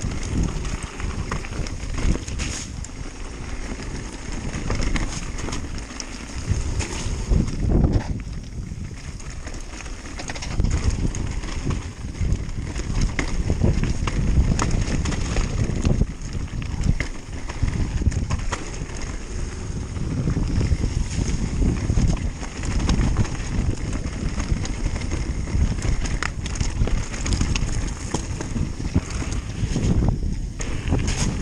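Mountain bike tyres rumbling over a loose stony trail at speed, with the bike rattling and clattering over rocks in frequent sharp knocks, and wind buffeting the microphone.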